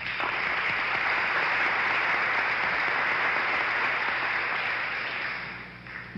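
Audience applause, steady for several seconds and dying away near the end.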